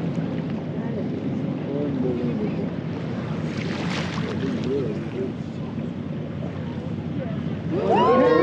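Steady wind noise on the microphone over the low rumble of a whale-watching boat on open water, with faint passenger voices. Near the end, people start shouting excitedly as a whale breaches.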